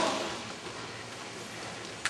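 Steady background hiss of a large hall, an even noise with no distinct event, in a pause between lines of speech.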